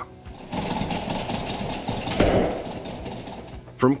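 A dense, rapid rattling buzz, mostly low in pitch, with a louder burst a little past the middle.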